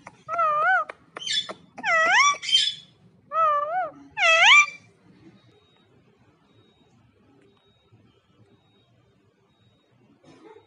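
Pet parakeets calling: about six wavering, whining calls in quick succession, two of them harsher squawks, over the first five seconds.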